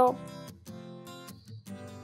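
Background music: an acoustic guitar playing softly plucked notes.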